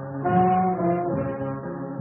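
1940s swing big band playing an instrumental passage, the horn section holding sustained chords that shift every half second or so.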